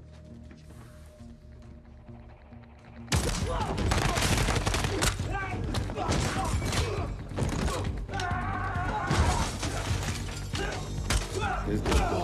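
Film soundtrack of a gunfight: low quiet music for about three seconds, then suddenly loud, rapid gunfire and impacts over the music.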